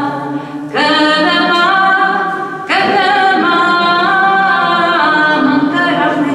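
A choir singing unaccompanied in long held notes, with new phrases beginning about a second in and again near the three-second mark.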